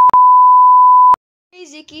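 A steady single-pitch test-tone beep, the kind laid over a 'technical difficulties, please stand by' card, with a brief click-like break just after it starts; it cuts off suddenly a little over a second in.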